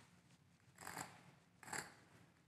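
Two short, faint scrapes of a Mohs hardness test pick, the number 7 steel pick, drawn across a concrete floor, about a second in and again near the end. The pick is only lightly scratching the concrete, a sign that the floor is a little softer than 7 in Mohs hardness.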